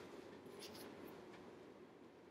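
Near silence with faint scratchy rustling as a paperback book is picked up and handled.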